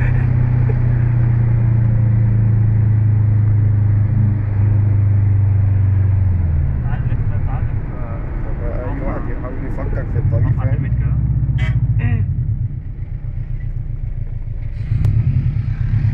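Subaru Impreza WRX STi's turbocharged flat-four engine heard from inside the cabin, running loud and steady for about six seconds and then falling in pitch as the driver eases off. The engine note rises and falls again through the rest of the drive and picks up once more near the end.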